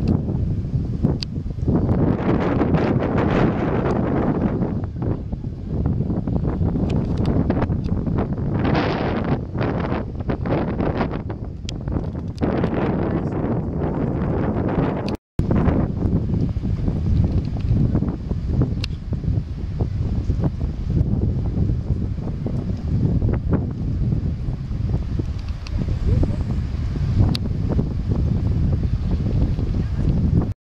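Wind buffeting a camera microphone outdoors, a continuous low rumble that swells in gusts. It breaks off for a split second about halfway through.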